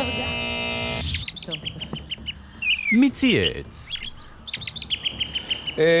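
A segment jingle: a held musical chord for about a second, then rapid runs of high cartoon bird-chirp sound effects. A voice slides down in pitch on the word "mi" ("who") in the middle.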